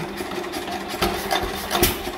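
Two-horsepower Alamo hit-and-miss engine running on its flywheels, with a few sharp knocks between quieter stretches, the loudest near the end. The engine has freshly lapped valves and reset rings.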